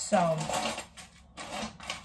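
A short spoken word, then noisy rustling and clatter of things being handled on a kitchen counter.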